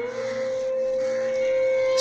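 A single musical note held steady with a few overtones, a drone that rises slightly in pitch just at the start and then stays level.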